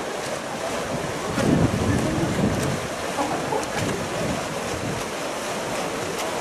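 Steady wash of swimmers splashing through butterfly strokes, mixed with wind on the microphone. A louder swell comes about a second and a half in and eases off within a couple of seconds.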